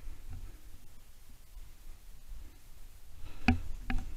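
Two short, sharp knocks about half a second apart near the end, over a faint low rumble.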